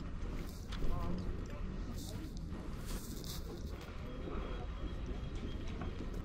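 Street-market ambience: indistinct voices of passers-by and a few footsteps and clicks on stone paving over a steady low rumble.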